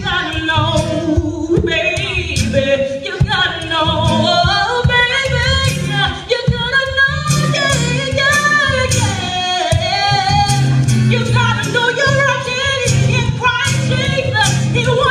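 A woman singing a gospel-style song with acoustic accompaniment, the voice holding and gliding through melodic lines with no clear words.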